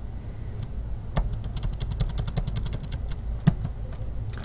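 Computer keyboard typing: a few scattered keystrokes, then a quick, even run of key clicks lasting about a second and a half, and a single louder key click near the end, over a low steady hum.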